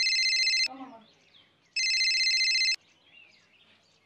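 Mobile phone ringing with an electronic trilling ringtone, about a second on and a second off: one ring ends under a second in, and a second ring sounds near the middle.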